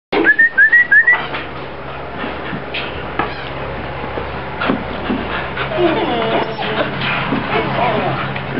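Young Rottweiler whining at the kennel wire: four short rising squeaks in the first second, then softer wavering whines near the end, with a few light taps.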